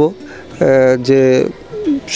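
A man's voice drawing out one long, level syllable as he hesitates mid-sentence.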